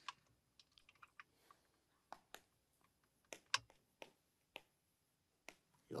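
Near silence broken by about fifteen faint, irregular clicks and ticks, the loudest about three and a half seconds in.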